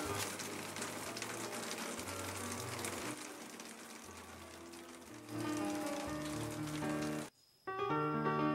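Background music over a steady hiss of water falling and dripping from a rock crevice. About five seconds in the water fades and the music grows louder. The music cuts out abruptly for a moment just after seven seconds, then returns.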